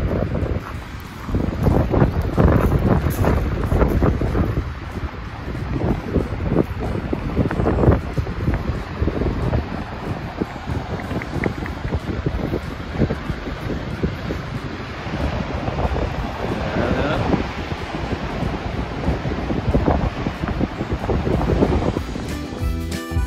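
Gusty wind buffeting the microphone, rising and falling in irregular gusts, over the steady rush of a large waterfall, Gullfoss.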